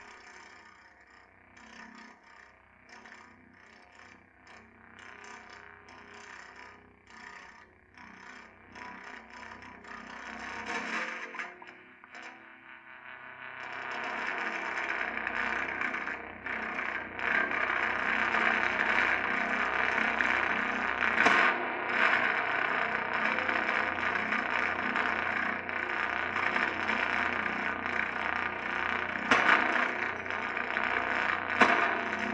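Prepared electric guitar run through effects pedals, making experimental noise: at first a quiet, broken, crackling and scraping texture. About fourteen seconds in it swells into a loud, dense, distorted noise drone that holds.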